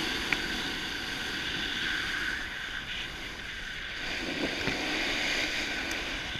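Wind rushing over the microphone during a fast run down a groomed slope, with the steady hiss and scrape of edges sliding on packed snow. A single small click sounds about a third of a second in.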